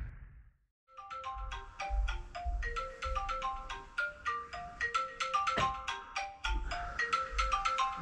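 Smartphone alarm tone: a quick marimba-like melody of short notes, looping over and over, starting about a second in.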